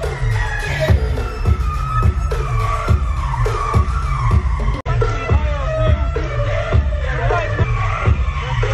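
Loud dance music from a DJ stage with a steady heavy bass beat about twice a second, with crowd noise underneath. The sound cuts out for an instant about five seconds in.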